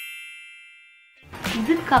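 A bright, bell-like chime sound effect rings and fades away over about a second, after which a voice starts again.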